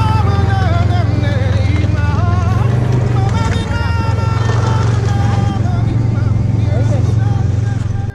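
Snowmobile engine running at a steady speed, a constant low drone, under a pop song with a singing voice. Both stop abruptly at the end.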